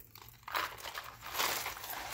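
Paper and packaging rustling and crinkling as things are handled in a box, starting about half a second in.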